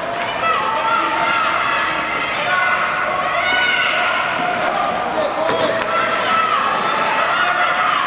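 Several people shouting and calling out over one another in an ice rink, with long held shouts and no clear words, and a few faint clicks of sticks or skates on the ice.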